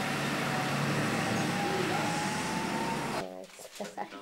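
Steady outdoor background noise, a rushing hiss with a low hum, which cuts off abruptly about three seconds in. A person's voice follows in a quieter room.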